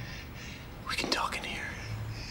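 A faint whispered voice, about a second in, over a low background hum.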